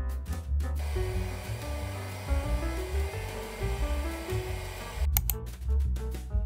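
Electric mixer with a wire whisk running in a bowl of chocolate ganache, whipping it, from about a second in until about five seconds in, under steady background music.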